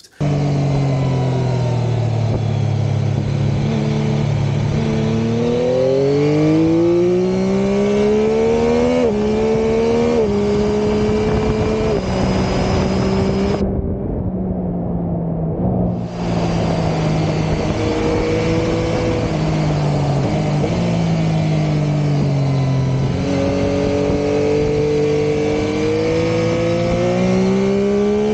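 Yamaha Tracer 9 GT's 890 cc inline three-cylinder engine heard on board while riding, its revs rising under acceleration and dropping in steps at upshifts, then falling off when the throttle is closed, with wind noise over it. It climbs twice, once early and again near the end.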